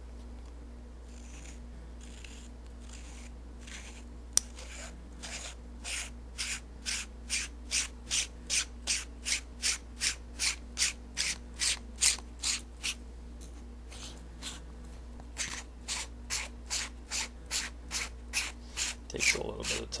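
A Fujinon 2x doubler is being screwed by hand onto one tube of a pair of binoculars, its threads rasping in an even run of short strokes, about three a second. The strokes start about four seconds in, stop briefly past the middle, and resume until near the end.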